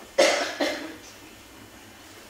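A person coughing twice in quick succession, the coughs about half a second apart and the first the louder.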